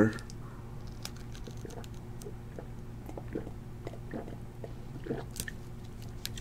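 Someone drinking water: faint mouth and swallowing sounds with scattered small clicks, over a steady low hum.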